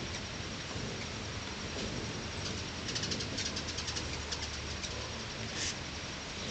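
Hummingbirds chittering around the feeders: quick series of short, high-pitched chips, thickest around three to four seconds in. A brief rushing sound comes near the end.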